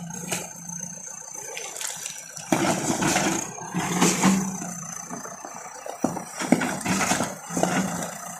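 JCB 4DX backhoe loader's diesel engine running as the machine rolls its bucket and wheels over beer cans, crushing them with bursts of crunching and rattling metal. The crunching comes in several waves, the strongest about two and a half seconds in, around four seconds and again near the end.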